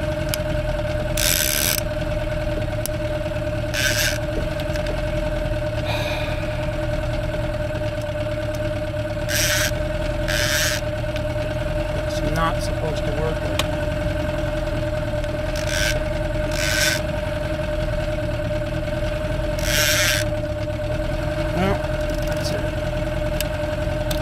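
Small Mariner outboard motor idling with a steady hum, while a brand-new Penn 309 trolling reel being worked by hand gives about seven short rasping bursts, some in pairs a second apart. The owner says something is seriously wrong with the reel.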